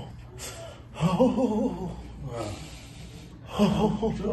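A person's voice gasping and making short wordless vocal sounds, in two bursts: one about a second in and one near the end.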